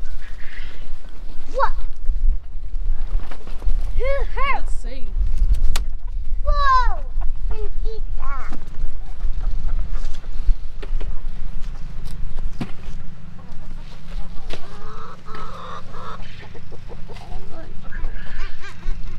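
Chickens squawking and clucking a few times, in two short bursts of calls about four and six and a half seconds in, with a couple of shorter clucks soon after.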